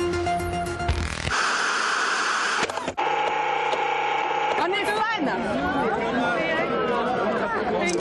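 A news jingle ends. Then come about a second and a half of static-like hiss, a click and a steady electronic tone as a transition effect. From about five seconds in, a crowd chatters, with several voices talking at once.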